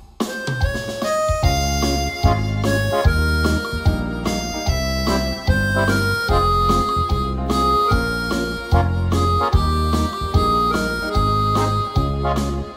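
Instrumental introduction to a Cantonese pop song, played on an electronic keyboard: a reedy lead melody in held notes over a steady bass and beat. No singing yet.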